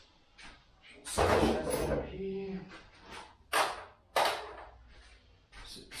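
Handling noises at a workbench while small parts are put away: a longer scraping clatter about a second in, then two sharp knocks a little under a second apart.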